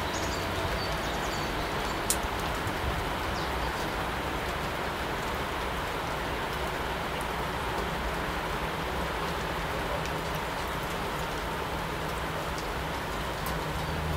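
A steady hiss of outdoor background noise, with a few faint, high bird chirps in the first second or so and one sharp click about two seconds in.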